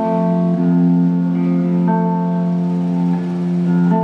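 Electric guitar played through an amplifier, sustained chords ringing out and changing about every two seconds.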